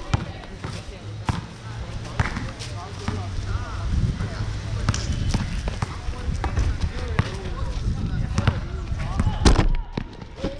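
A basketball bouncing on a hard court in irregular bounces, the loudest thump just before the end, with voices in the background.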